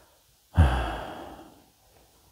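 A man sighing: one audible breath out starting about half a second in and fading away over about a second.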